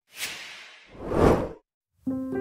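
Whoosh sound effect in a title transition: a hissing rush that starts high and fades, then a louder, deeper swell peaking just over a second in that stops abruptly.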